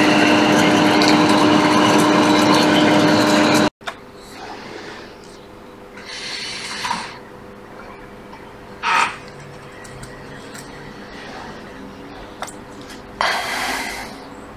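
A steady machine hum with a low tone stops abruptly about four seconds in. After that it is much quieter, with three short rubbing or hissing noises as a cotton ball held in tweezers scrubs the circuit board.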